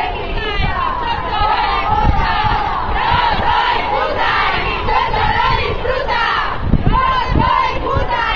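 A marching crowd of protesters shouting slogans together, many voices overlapping loudly.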